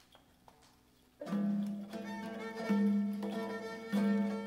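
A few faint ticks in a quiet room, then about a second in a Uyghur ensemble starts to play, led by a ghijak, a bowed spike fiddle, holding long low notes.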